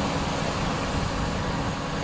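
Steady rushing noise of wind on a phone's microphone, with an uneven low rumble.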